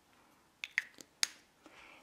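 A few short, light clicks in quick succession, the last one the sharpest, from hands handling plastic pump-top oil bottles.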